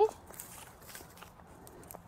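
Faint scattered crackles and rustles of soil and roots as a dahlia tuber clump is pulled up out of the ground by its stems.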